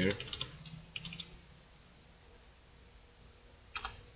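Computer keyboard typing: a few quick keystrokes in the first half second, a couple more about a second in, then a short run of keys near the end, with quiet between.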